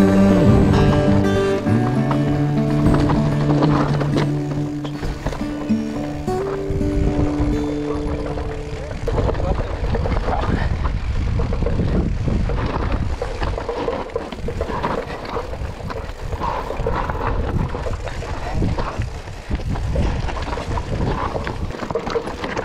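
Guitar-backed music with held notes fades out about nine seconds in, giving way to the mountain bike's own noise on a rocky descent: tyres rolling and clattering over loose stones and the bike rattling over the rough ground.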